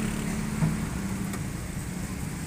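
A motor vehicle engine idling: a steady low rumble.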